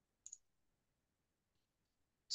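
A single faint computer mouse click, press and release in quick succession, about a quarter of a second in, advancing the presentation to the next slide; otherwise near silence.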